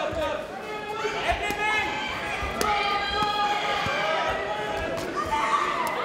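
Ringside voices shouting during a kickboxing bout, cut by several sharp smacks of kicks and punches landing on bodies and gloves.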